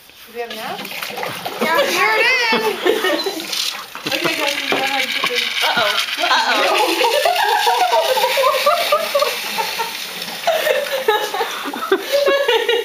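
Indistinct voices talking excitedly over a steady watery hiss and splashing: carbon dioxide from a foaming reaction flask bubbling through a hose into a bin of water.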